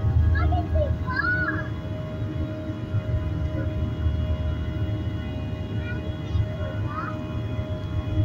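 Steady engine drone inside an airliner cabin: a low rumble with several steady humming tones over it. Brief wavering, voice-like sounds rise and fall about a second in and again near the end.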